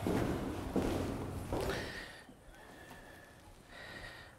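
Footsteps and scuffing on a rock floor, with a few dull thuds in the first two seconds, then much fainter movement.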